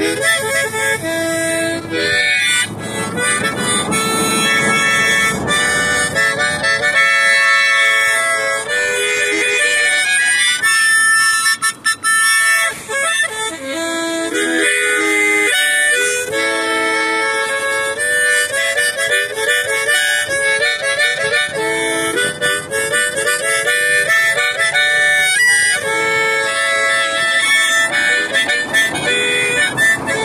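A harmonica playing a tune of held notes and chords that change every second or so, with a brief break about twelve seconds in.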